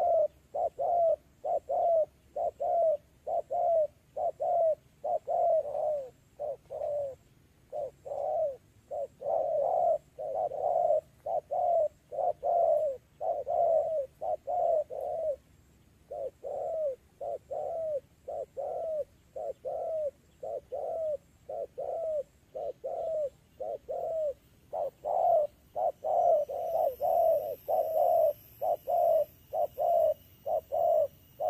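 Spotted dove cooing: a long series of low, soft coos, about two a second, in runs broken by short pauses.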